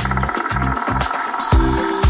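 Electronic dance music from a DJ mix. The kick drum drops out for a short break filled by a fast pulsing synth and a brief hiss. About one and a half seconds in, the steady kick returns, roughly two beats a second, with a held bass synth note.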